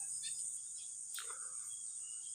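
Insects chirring steadily and high-pitched in the background, with a faint falling chirp a little over a second in.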